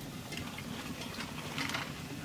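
Crisp crust of a freshly fried, puffed dal luchi (lentil-stuffed puri) crackling as fingers press in and tear it open: a few faint, irregular clicks.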